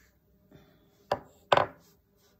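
Two sharp knocks about half a second apart, with a faint tap just before them: a small hand-held piece struck against a hard work surface.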